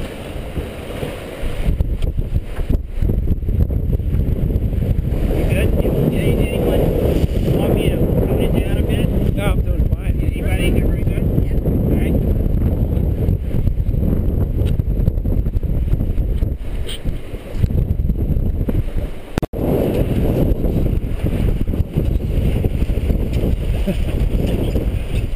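Wind buffeting the microphone and water rushing along the hull of an Express 27 sailboat sailing heeled through choppy water: a loud, steady rush, heaviest in the low end. It briefly cuts out about nineteen and a half seconds in.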